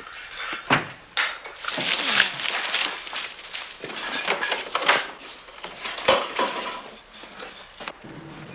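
A run of irregular clattering, knocking and rustling noises, with sharp knocks about a second in and again about six seconds in.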